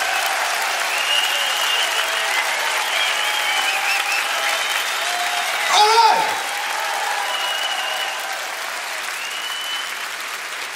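Concert audience applauding and cheering at the end of the song, with whistles over the clapping. One louder call about six seconds in falls sharply in pitch, and the applause slowly eases toward the end.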